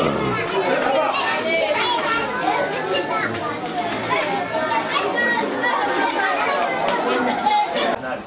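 A roomful of schoolchildren talking at once: a steady babble of many young voices with no single speaker standing out.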